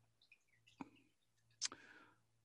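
Near silence with two faint clicks, the first just under a second in and the second shortly before the end.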